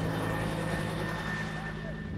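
Helicopter in flight overhead, a steady drone with a thin high tone over it, fading slightly as it flies away.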